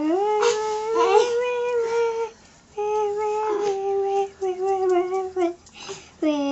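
A voice holding long, steady notes: three drawn-out hums, the first rising at the start, with short breaks between them.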